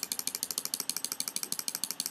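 Computer mouse scroll wheel clicking notch by notch in a fast, even run of about fourteen ticks a second, stepping a node's value up.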